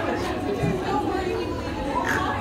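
Indistinct talk and chatter of several people at once, recorded on a phone's microphone.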